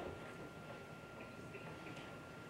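Quiet room tone with a faint steady high hum and a few faint, soft ticks.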